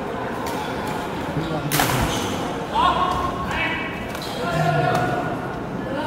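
Badminton racket strikes on a shuttlecock during a rally, with one sharp, loud hit about two seconds in and fainter hits around it.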